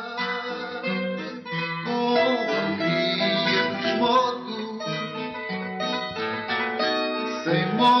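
Instrumental break of a Portuguese song: a Portuguese guitar (guitarra) picking out the melody over a viola, the Portuguese classical guitar, strumming the chords. The singer's voice comes back in near the end.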